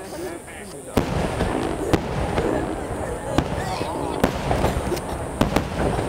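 Aerial firework shells bursting overhead: a series of sharp bangs, one about a second in and more coming faster toward the end, with crowd voices underneath.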